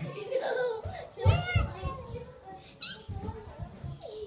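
Young girls' high-pitched voices, giggling and making wordless playful sounds, with a short high squeal about three seconds in.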